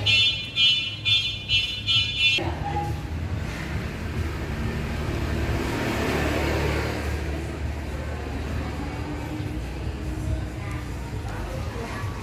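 About five high electronic beeps, roughly two a second, that stop abruptly after two and a half seconds. Then a steady low rumble of traffic-like noise follows, swelling and fading again around the middle.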